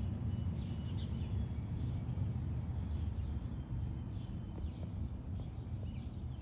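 Outdoor background: a steady low rumble with birds chirping over it, in short downward-sweeping calls repeated every second or so and a few thin, high, held whistles.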